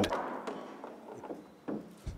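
A pool shot being played: the cue strike right at the start, then a few light, sharp clicks of pool balls knocking together on the table, the clearest two near the end.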